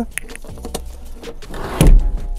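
Second-row seat of a Volkswagen ID.6 being folded forward: light clicks and rattles from the seat mechanism, then a heavy thump near the end as the seat drops into its folded position.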